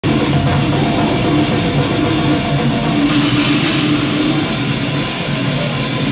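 Brutal death metal band playing live: heavily distorted guitars and bass over fast, dense drumming. The cymbals grow brighter about halfway through.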